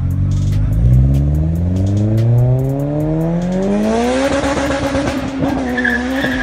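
Turbocharged Honda K20 engine of a Civic Si accelerating hard: the revs climb steadily for about three seconds, then hold high. A high-pitched squeal comes in near the end.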